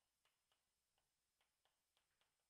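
Very faint, irregular taps and short scrapes of chalk on a chalkboard as words are written, about five or six strokes.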